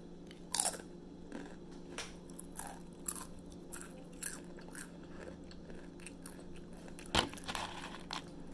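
Close crunching and chewing of Doritos tortilla chips, irregular crunches with the sharpest bites about half a second in and again near the end.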